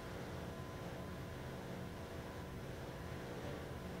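Faint, steady room tone with a low hum, with no distinct events.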